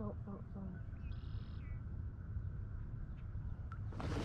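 A bird calling once, briefly, about a second in, over a low steady rumble of outdoor background noise.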